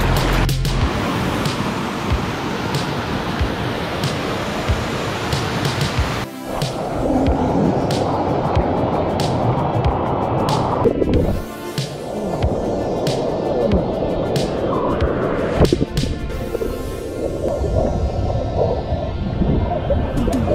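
Rushing whitewater heard on a splashing action-camera microphone. The sound turns dull and muffled for several seconds at a time as the camera goes underwater. Background music runs under it.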